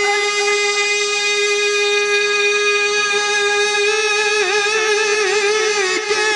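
A male devotional singer holds one long sung note, steady at first and then wavering in vocal ornaments from about four seconds in.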